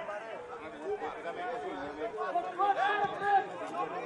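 Several voices talking over one another, with no single speaker clearly in front, getting louder around the third second.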